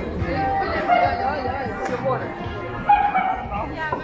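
Busy pedestrian street with passers-by talking and music playing. A dog gives a few short, high whines or yips, the loudest about three seconds in.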